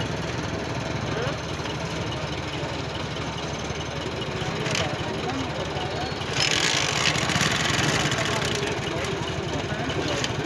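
A tractor's diesel engine idling steadily, with murmuring voices over it. About six seconds in, a hissing noise rises for about two seconds.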